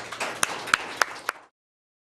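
Applause, with a few sharper single hand claps standing out close to the microphone. The sound cuts off suddenly about one and a half seconds in, leaving dead silence.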